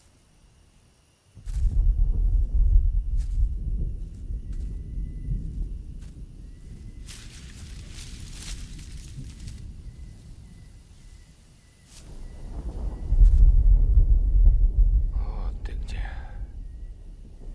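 A deep, low rumble that starts suddenly about a second and a half in, slowly fades, then swells loud again near the end.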